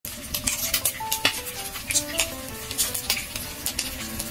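Battered squid and pork tempura shallow-frying in oil, a dense crackle of quick pops, with a soft melody of short notes beneath.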